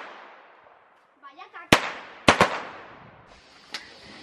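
Small firecrackers exploding on a paved street: one sharp bang about halfway through, then two more in quick succession, each with a short echo.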